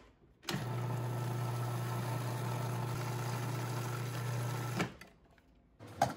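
Food processor motor running steadily for about four seconds, starting abruptly and then cutting off.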